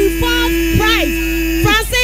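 Electrical mains hum from a public-address system, under a long steady tone that cuts off just before the end and a few short voice calls.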